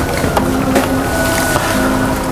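Background music of held notes that change pitch about every half second, over a steady rushing noise.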